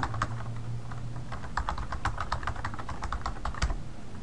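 Computer keyboard being typed on: a quick, irregular run of key clicks as a short phrase is entered, over a faint low steady hum.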